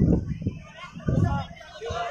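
Indistinct voices in the background, with two short low rumbles: one at the start and one just after a second in.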